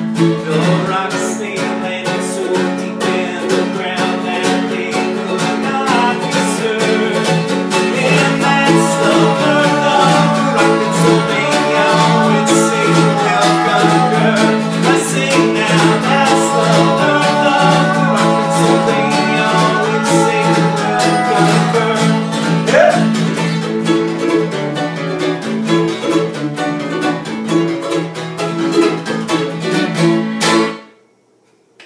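Acoustic guitar strumming with a mandolin picking a melody over it, a bluegrass-style instrumental stretch.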